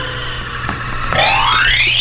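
Electronic sound-effect cue played for an entrance: a held tone sinking slowly in pitch, then a pitch sweeping steadily upward through the last second.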